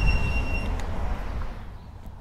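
Wind rumble and road noise picked up while riding an e-bike in city traffic, with a steady high-pitched squeal through the first half second or so. The noise fades away about a second and a half in.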